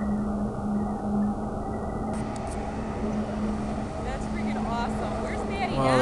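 Steady hum of a motorboat engine running, with people talking over it in the last couple of seconds.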